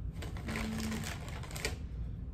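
Wrapped chocolates and their plastic wrappers crinkling and rustling as they are handled, a quick run of small crackles lasting about a second and a half, over a steady low hum.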